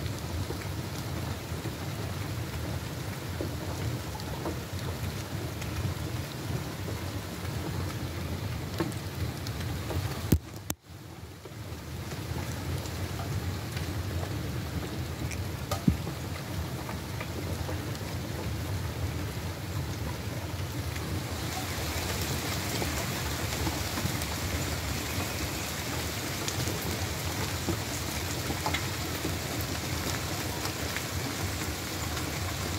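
Steady rain, a continuous even hiss with a low rumble under it. It cuts out briefly about a third of the way in, and the hiss is brighter in the last third.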